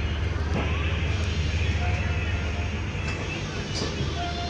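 Passenger train coach rolling slowly out of a station, heard through an open door or window: a steady low rumble with wheel and track noise.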